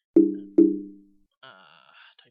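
Two identical low, ringing tones, struck about half a second apart, each dying away quickly, like a computer alert chime; a faint higher-pitched sound follows near the end.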